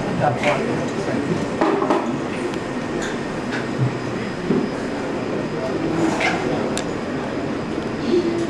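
Knife cutting seasoned peppers on a cutting board, a few light sharp taps over steady room noise with faint indistinct voices.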